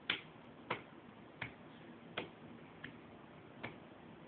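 A baby slapping an open hand on the rim of a plastic laundry basket: six short sharp slaps, a little under a second apart.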